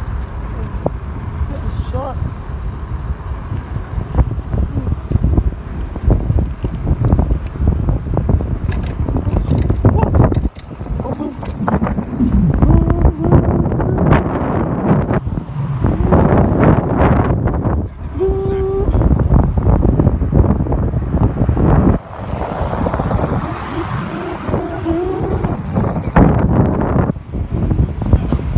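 Wind buffeting a phone microphone on a moving bicycle, a loud, rough rumble that rises and falls with the riding, over street traffic. A short squeal comes about eighteen seconds in.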